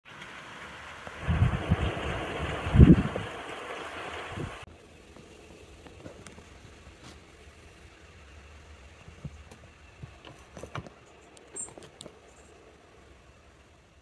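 Wind blowing across the microphone, with low buffeting thumps from gusts, especially a strong one just under three seconds in. It stops abruptly after about four and a half seconds, leaving a quiet background with a few faint clicks.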